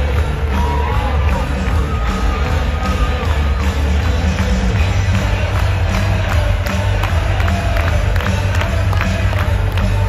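Hockey arena goal celebration: loud music with a heavy bass beat over the PA, heard through a phone in the stands, with the crowd cheering and clapping.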